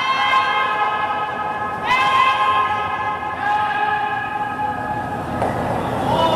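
Curlers shouting long, held calls to the sweepers while a stone is being swept: one drawn-out cry after another, a new one starting about every one and a half seconds.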